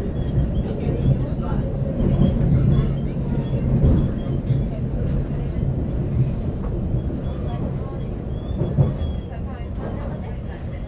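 Commuter train running on its rails, heard from inside the passenger carriage: a steady low rumble with a hum, and faint short high whines over it.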